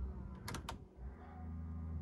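Two quick clicks about half a second in, from the car's headlight switch being turned on, over a steady low hum.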